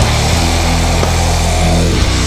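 Sludge metal: heavily distorted guitar and bass holding one low, sustained chord, with no vocals.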